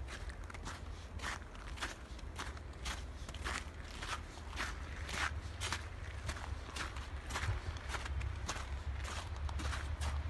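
Footsteps crunching through snow at a steady walking pace, about two steps a second, over a steady low rumble.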